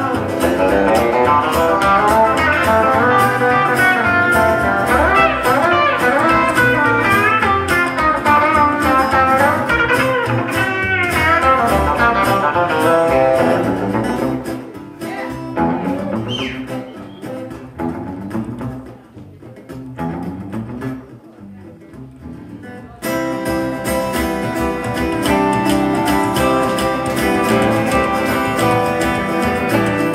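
Live acoustic-electric blues band with electric guitar, acoustic guitar and upright bass playing an instrumental break, with bending lead-guitar lines over the band. About halfway through the band drops much quieter for several seconds, leaving mostly low bass notes, then the full band comes back in suddenly near the end.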